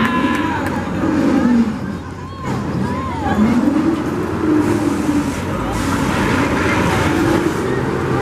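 Swinging ship fairground ride in motion, its mechanical rumble rising and falling in pitch with each swing of the gondola, about every three and a half seconds, with people's voices mixed in.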